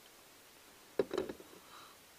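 Quiet background hiss for about a second, then a man says a short "okay" with a sharp start, and it goes quiet again.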